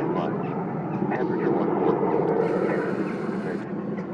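Jet engine noise from a Lockheed U-2's single turbofan flying low overhead on approach to land, a steady sound that eases slightly. A short high hiss joins it a little past the middle.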